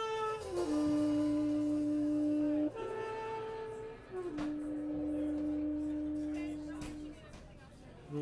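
Jazz trio playing a slow passage: a saxophone holds long notes, twice sliding down from one pitch to a lower note held for about two seconds, over a sustained upright bass note and light drum and cymbal touches. The sound thins out near the end.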